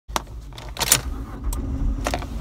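Car key pushed into the ignition switch and turned, the key ring jangling in a few sharp metallic clicks, the loudest just before a second in. From about halfway through, a low steady hum sets in beneath the clicks.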